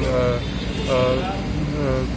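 A man's drawn-out hesitation sound, "aa", held twice with a short gap between, over a steady low background rumble.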